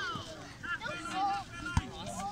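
Background voices of children and spectators calling out across a playing field, with a short dull thump near the end.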